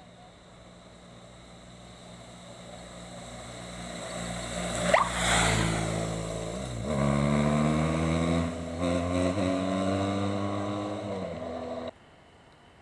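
Police motorcycle engine growing louder as it approaches and passes close by, then pulling away under acceleration, its pitch climbing and dropping back at each gear change.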